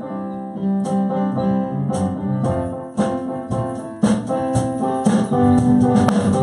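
Electric keyboard playing sustained gospel chords as an instrumental lead-in to a praise song. Light cymbal taps come about once a second and grow more frequent from about halfway through.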